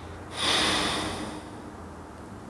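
A crying man draws one sharp, breathy sniff through his nose, lasting about a second and then fading away.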